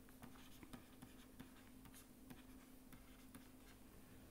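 Faint scratching and light tapping of a stylus writing on a tablet, over a low steady hum.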